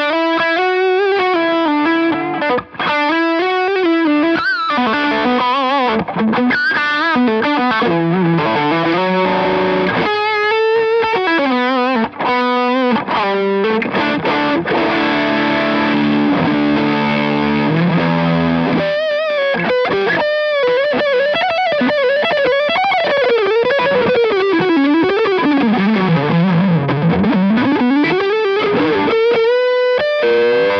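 Epiphone Les Paul electric guitar played through a distorted amp: fast lead runs with string bends and vibrato. Near the end comes a long glide down in pitch and back up.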